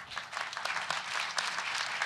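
Audience applauding, many hands clapping at once; it starts suddenly and holds steady.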